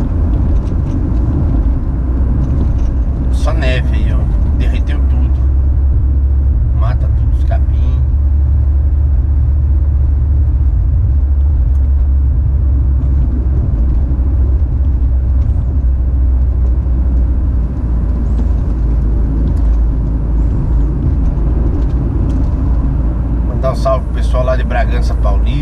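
Steady low rumble of a car's engine and tyres on the road, heard from inside the cabin while driving. A few brief, sharper sounds come in the first eight seconds.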